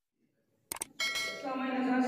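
Two quick clicks from the intro's subscribe-button animation, then a man's voice starts through a microphone and public address system, holding one long, steady note.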